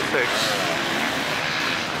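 Steady drone of an enduro motorcycle engine running on the course, under a brief spoken word at the start.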